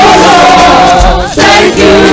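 Live gospel praise singing by a group of voices with a band. The voices hold one long note, then start a new phrase just past halfway, with a low thud about a second in.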